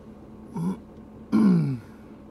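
A man clearing his throat twice: a short sound, then a longer, louder one that falls in pitch.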